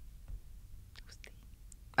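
A quiet pause between spoken answers: a faint low hum of the room, with a few soft breath and mouth sounds from a speaker about a second in.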